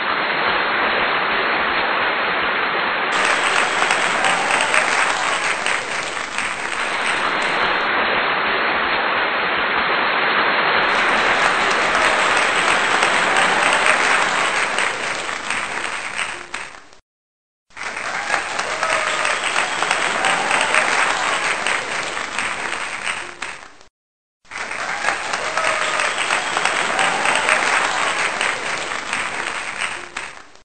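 Crowd applauding, a dense steady clapping. It comes in three stretches with two brief silent gaps, one about 17 seconds in and one about 24 seconds in.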